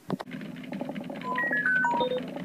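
A quick run of short electronic beeps stepping down in pitch in the second half, over soft clicking and a low steady hum.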